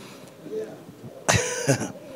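A man's short breathy vocal burst, about a second and a half in, over low room noise.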